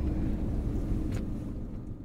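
Low, steady rumble of a vehicle heard from inside its cabin, with a faint click about a second in; it fades away near the end.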